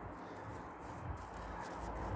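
Low, steady background noise with no distinct sound event.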